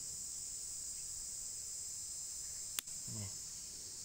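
Steady, high, even drone of insects, with a single sharp click a little before the three-second mark.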